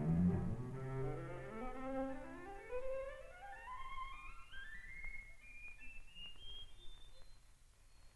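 String quartet of cello, viola and two violins bowing a rising scale, starting on a loud low cello note and climbing steadily note by note through the viola and violins across the ensemble's six-octave range, ending on a thin, high violin note near the end.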